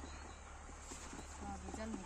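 Faint background voices talking over a low steady hum, with the voices coming in during the second half.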